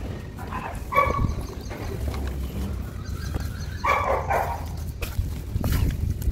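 Wet sand being squeezed and crumbled by hand in a plastic tray, a soft gritty mush over a low steady rumble. A dog barks in the background, about a second in and again around four seconds in.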